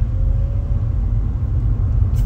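Steady low rumble of a moving car heard from inside its cabin: road and engine noise while driving.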